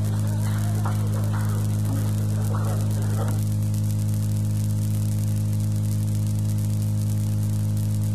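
Steady electrical mains hum with hiss in the recording. Faint voices carry on over it for about the first three seconds, then the hum and hiss continue alone.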